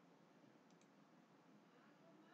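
Near silence with faint room tone, and two quick, very faint mouse clicks a little under a second in.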